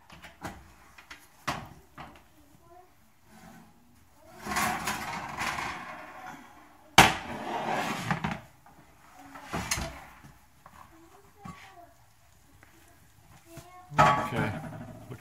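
Oven door opened and a lidded enameled cast-iron skillet handled out of the oven, set down on a glass-top electric stove with a sharp clank about seven seconds in, followed by a few lighter knocks of the pan and lid.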